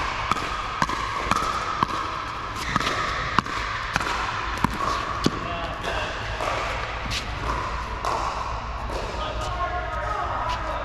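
Pickleball paddles hitting the ball in a quick exchange at the net: sharp pops about every half second that echo in a large indoor hall. The exchange stops about five seconds in, and voices follow.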